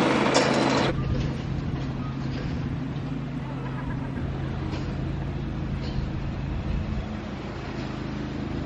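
A steady low motor hum at an even level, with voices in the first second.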